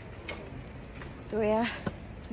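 A woman's voice making one short, pitched syllable about a second and a half in, over steady outdoor background noise, with a single click just after.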